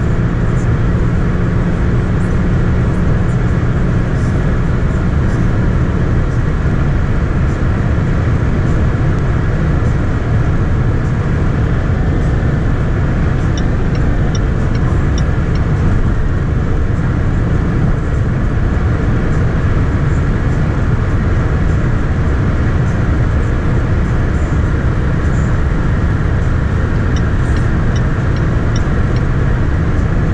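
Inside the cabin of a 2019 Range Rover Sport SDV6 (3.0-litre V6 diesel) at motorway speed, about 200 km/h: a steady, deep rumble of tyre and wind noise with engine drone, unchanging throughout.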